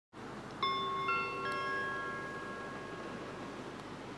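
A railway station public-address chime from the platform loudspeaker: three rising notes struck about half a second apart, starting about half a second in, that ring on and slowly fade. It is the attention tone that comes before an automated train announcement.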